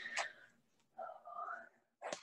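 A woman's soft, whispered closing word, preceded by a sharp click of the recording device being handled.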